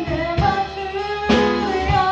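A woman sings a jazz song with long held notes, accompanied by piano, bass and drums.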